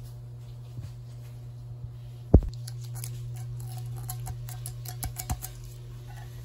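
Handling noises: a single sharp low thump about two seconds in, then a run of light clicks and taps, over a steady low hum.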